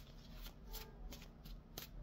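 A thick stack of handwritten index cards being shuffled by hand: faint, quick flicks and rustles of card stock.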